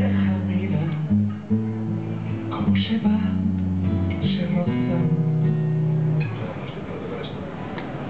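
Acoustic guitar played solo, a run of strummed and picked chords over changing low bass notes, growing quieter about six seconds in.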